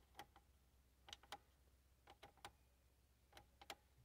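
Faint, short plastic clicks of the front-panel push buttons on a first-generation Toyota Yaris factory radio being pressed and released, about eight or nine clicks, several in quick pairs.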